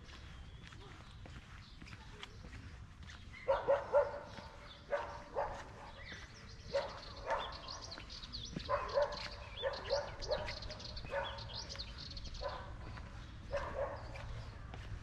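A dog barking repeatedly in short bouts, starting a few seconds in.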